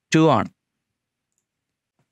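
A man speaks a couple of words in Malayalam, cut off abruptly about half a second in, then near silence.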